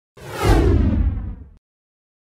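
Logo-intro whoosh sound effect over a deep boom, its hiss falling in pitch, cutting off suddenly at about a second and a half.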